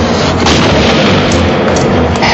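Loud, dense, rumbling sound effects with a few sharp booming hits.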